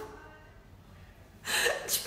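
A woman laughing: a lull, then a sharp gasping breath about one and a half seconds in as her laughter starts up again.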